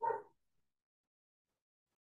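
A woman's short voiced breath or murmur lasting about a third of a second right at the start, then dead silence, the audio cut to nothing.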